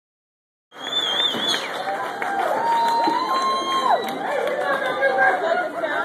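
Concert audience cheering, shouting and whistling between songs, with a warbling whistle about a second in and long drawn-out shouts after it. The sound cuts in suddenly under a second in.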